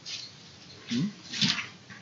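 A pause in the preaching with low room hiss, broken about a second in by two short, quiet voice sounds, one of them a questioning "Hmm?".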